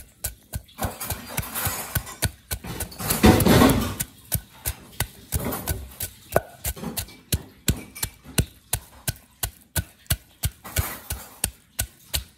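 Wooden pestle pounding garlic cloves and salt in a heavy wooden mortar: a steady run of dull wooden thuds, about three a second, as the cloves are crushed. The sound is louder and rougher about three seconds in.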